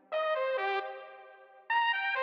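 Arturia Mellotron V software instrument playing a short melodic phrase of stepping notes that fades away, then a second phrase starting about 1.7 s in.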